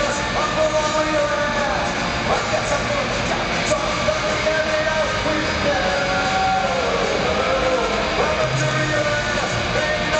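Punk rock band playing live through a large PA: distorted electric guitars, bass and drums with a lead singer's voice over them, recorded from far back in the audience.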